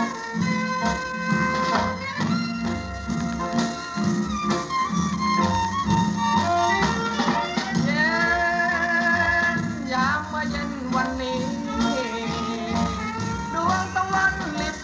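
Thai luk thung song recording playing: a melody with held and sliding notes over a steady low beat.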